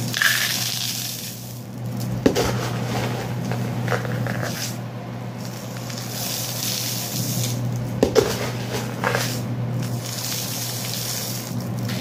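Dry beans and rice poured back and forth between two plastic cups: the grains make a hiss that swells and fades in pours, with a few sharp clicks of hard grains or cups.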